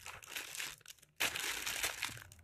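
Thin plastic courier mailer bag crinkling as it is pulled and torn open by hand, with a brief lull about a second in and then louder crinkling.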